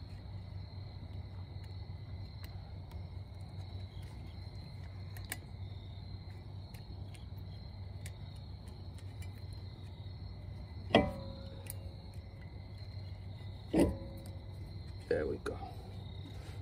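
Hand work on a brake rotor hub: small clicks and two sharp metal knocks, about eleven and fourteen seconds in, as a retaining clip is pressed onto a wheel stud. Under it, a steady low hum and a thin steady high chirring like crickets.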